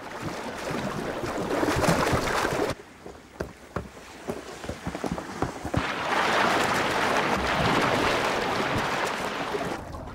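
Shallow water splashing and churning as bull sharks thrash at the surface. It builds over the first couple of seconds, breaks off into scattered single splashes, then turns into a long stretch of heavy, continuous splashing from about six seconds in.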